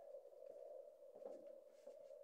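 Faint steady hum from a battery-fed power inverter that has just been switched on, with a couple of soft faint knocks.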